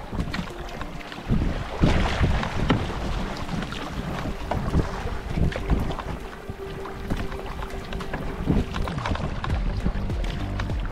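Wind buffeting the microphone over choppy sea, with the splashes of a double-bladed kayak paddle stroking through the water.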